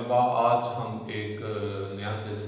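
A man's voice continuing without a break, with long syllables held on a steady pitch.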